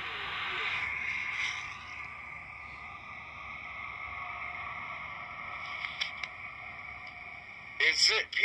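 Handheld digital voice recorder playing back an EVP recording through its small speaker: the steady hiss of the recorded background noise, with a few faint ticks about three-quarters of the way through.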